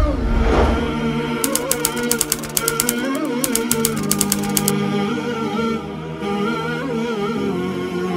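Wordless a cappella nasheed: voices holding long, wavering tones. About a second and a half in, a typewriter sound effect adds rapid key clicks for about three seconds.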